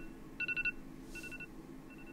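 iPhone alarm ringing: quick bursts of four electronic beeps, repeating about every three-quarters of a second and growing fainter with each repeat.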